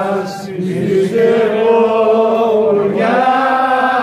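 A group of men singing unaccompanied, holding long notes over a steady low note, with a brief break for breath about half a second in.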